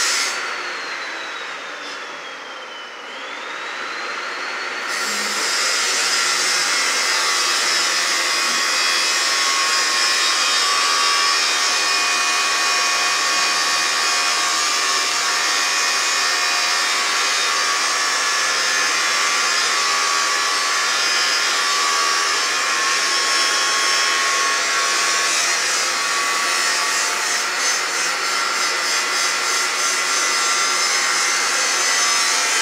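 Handheld angle grinder with an abrasive cutting disc cutting through a steel bar, with a high whine. The whine drops in pitch and level over the first three seconds, then climbs back, and from about five seconds in the cut runs on steadily.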